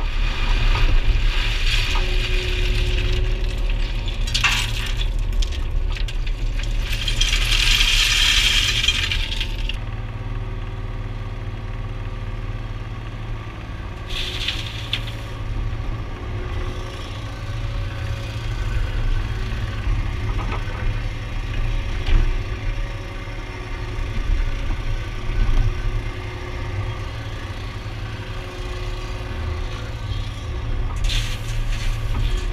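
An excavator's engine running steadily, heard from inside the cab, with bursts of stones clattering and rattling as the bucket scoops and tips rubble. The longest clatter comes about seven to nine seconds in, with a shorter one around fourteen seconds.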